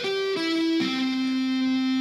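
Electric guitar playing slow single notes one string at a time, stepping down in pitch: two short notes, then a third lower note held and ringing from about a second in. Each new string is fretted by a finger that also mutes the string before it, so the notes don't ring together: the slowed-down groundwork of a sweep-picked arpeggio.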